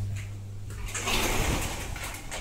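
A glass-paned door with a metal grille being pushed open, heard as a noisy swish about a second long midway, over a low steady hum.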